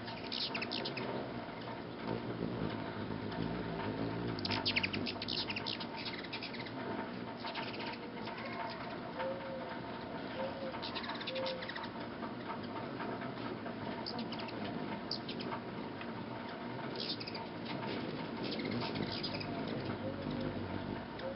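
Hummingbirds at feeders: wing hum with bursts of rapid, high chittering chip calls every few seconds.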